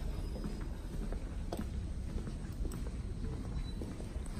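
Footsteps on a hard, polished corridor floor, about two steps a second, over a steady low rumble from the handheld phone's movement.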